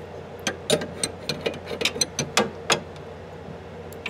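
Steel wrench clicking against the nut of a braided supply line as it is tightened onto a shut-off valve: a string of about ten irregular metallic clicks and taps, ending a little before the last second.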